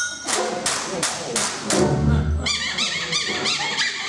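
Small trad jazz band playing, a washboard clicking out the beat over low string bass notes. About two and a half seconds in, a high, wavering melody line comes in on top.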